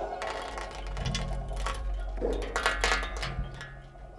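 Free-improvised music for live electronics and a banjo laid flat and played by hand: a steady low electronic drone with sparse, irregular short sounds over it.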